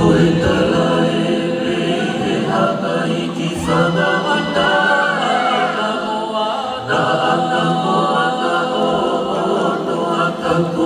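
A choir of many voices singing a song together in harmony, continuously.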